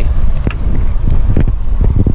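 Wind buffeting the microphone as a heavy, steady low rumble, with a few short knocks from the phone being handled.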